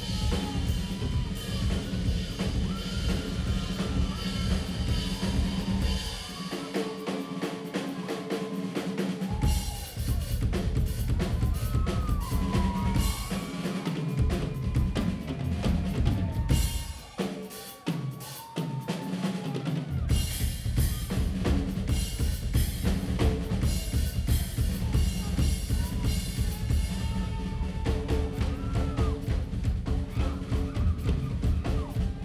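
Live rock drum kit played hard and fast, a featured drum spot with rolls and hits on snare, toms, bass drum and cymbals. A held low bass line runs underneath and drops out twice, leaving the drums almost alone.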